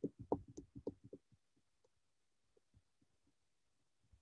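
A brief, faint chuckle heard over a video call: a quick run of soft breathy pulses in the first second or so, then a couple of faint ticks.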